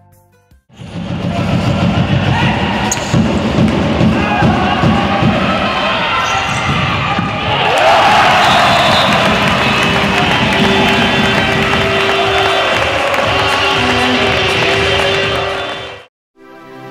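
Live sound of a futsal match in a sports hall: the ball being kicked and bouncing on the hard floor in a run of sharp thuds, with players and spectators shouting. From about eight seconds in the crowd noise swells, and a long steady note sounds over it for several seconds.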